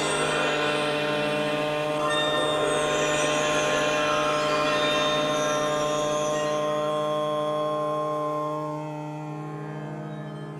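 Background music of steady, sustained held tones that drops in level about eight and a half seconds in.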